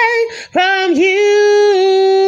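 A woman singing unaccompanied. A held note ends, there is a short breath about half a second in, and then a long sustained note follows that begins to waver with vibrato near the end.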